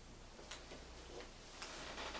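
Quiet room tone: a low steady hum with a few faint, short clicks at uneven intervals.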